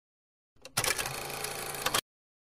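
A rattling, mechanical-sounding transition sound effect from the video editor. It starts with a few faint clicks about half a second in, runs as an even clatter for just over a second with a sharp hit near the end, and cuts off abruptly.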